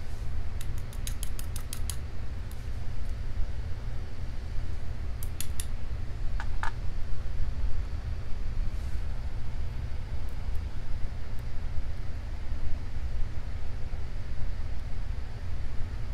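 Small metallic clicks of tweezers picking pins and springs out of a brass lock plug and setting them in a plastic pin tray: a quick run of ticks in the first two seconds and a couple more about five seconds in. A steady low hum runs underneath.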